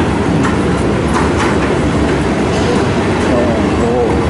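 Busy railway station ambience under the train shed: a steady, loud rumble of trains standing at the platforms, with background voices and occasional clicks.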